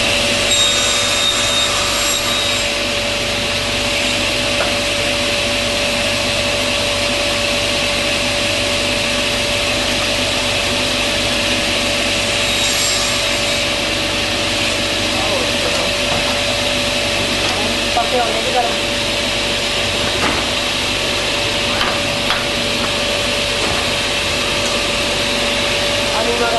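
Table saw with sliding table running steadily, its circular blade spinning with a constant whine over an even drone, while small wood pieces are cut.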